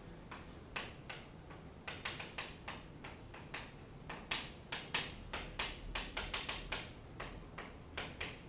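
Chalk writing on a chalkboard: an irregular run of short, sharp taps and scrapes as the strokes are made, several a second, thickest in the middle.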